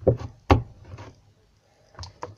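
Two sharp knocks on a tabletop about half a second apart, as slime is handled and rolled by hand, followed by a few soft handling sounds.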